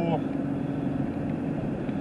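Steady road and engine noise inside a vehicle's cabin while cruising on a highway, with a constant low hum.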